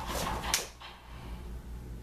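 A quick rush of breath or clothing swish, then a single sharp slap about half a second in, as a fast hand strike makes contact during a martial-arts attack drill. Low room hum after it.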